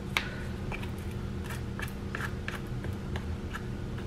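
A metal spoon scraping sticky marshmallow and crisped-rice cereal mix off a wooden spoon into a baking dish: a scatter of short, soft crunchy clicks over a low steady hum.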